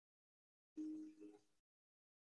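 Near silence, broken once about a second in by a brief soft sound with a steady low tone, lasting under a second.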